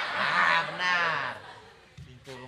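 Studio audience laughter dying away, with high honking laughs in it, fading out about a second and a half in.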